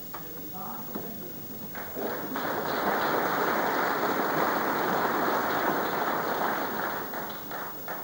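Audience applauding: a few single claps about two seconds in swell into steady applause, which thins to scattered claps near the end.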